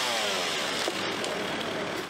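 Petrol chainsaw engine running, its pitch falling over the first half-second as the throttle is eased off, then running on steadily.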